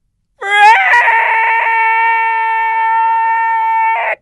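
A man's voice holding one long, loud high note for about three and a half seconds: it wavers and slides up at the start, then stays level and cuts off.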